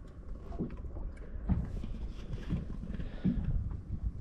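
Low rumble with several soft, irregular knocks and slaps, water lapping against the hull of a small open boat.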